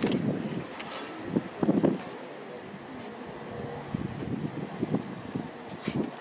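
Wind gusting over the microphone in open air: irregular low buffets over a steady background hiss.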